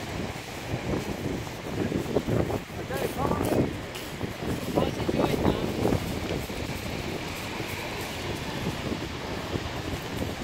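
Wind buffeting the microphone over the steady wash of surf breaking on a pebble beach, with people's voices calling out during the first half.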